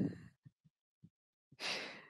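A woman's laugh trails off at the start, then a single short audible breath about one and a half seconds in.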